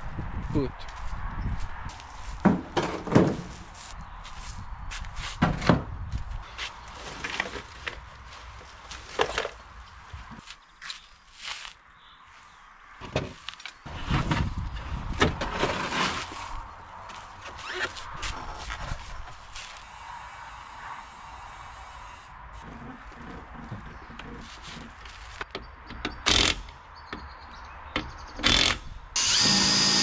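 Clunks and knocks of a steel spare wheel and other items being handled in a car's boot, then a cordless drill whirring at the wheel just before the end.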